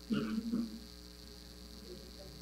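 Steady electrical mains hum on the audio line, with a faint steady high whine above it. A brief, weak sound rises over the hum within the first half second and then dies away.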